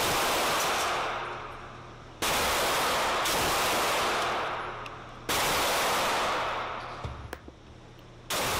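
Two pistol shots in an indoor shooting range, about three seconds apart, each a sudden loud blast that holds for about a second and then dies away in a long echoing tail.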